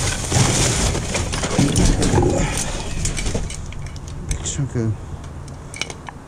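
Trash being rummaged by hand in a metal dumpster: plastic bags and packaging rustling and items knocking against each other, busiest in the first half, then quieter with a few sharp clicks near the end.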